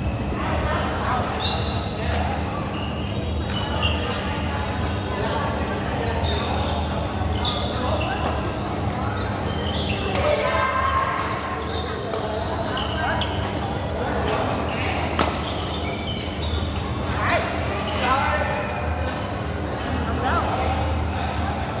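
Badminton play: racket strings hitting the shuttlecock again and again in sharp cracks, with players' footwork on the court floor, echoing in a large hall. A steady hum and background chatter from other courts run underneath.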